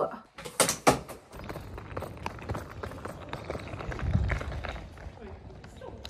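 Footsteps and a roller suitcase's wheels rattling over paving stones, a steady rough clatter of small ticks, after two sharp knocks in the first second.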